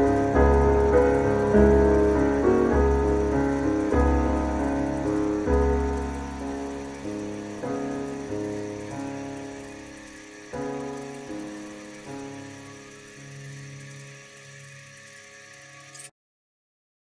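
Piano playing a slow closing passage, each note struck and dying away, the playing thinning out and fading steadily until it stops right at the end.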